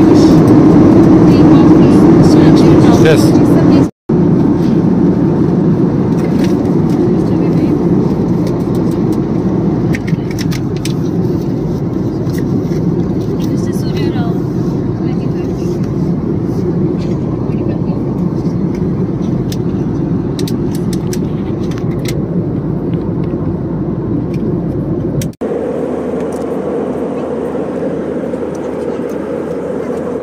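Steady drone of an airliner cabin in flight. It breaks off and changes tone abruptly about four seconds in and again near the end.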